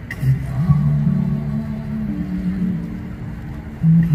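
A man singing long held notes that move slowly in pitch, accompanied by an acoustic guitar, with a low rumble underneath.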